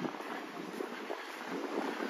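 Steady seaside background hiss of wind and distant surf, with no single sound standing out.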